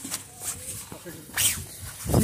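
Brief wordless voice sounds, two short vocal utterances about a second apart.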